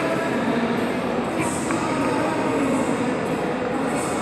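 Ice skate blades gliding and scraping over rink ice in a steady rumble, with brief scrapes about a second and a half in and near the end.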